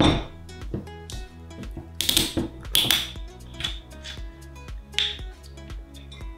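Background music plays over a handful of short rattling, noisy bursts. These are a glass bottle of apple cider vinegar being shaken to mix the sediment ('mother'), and its small metal screw cap being twisted off.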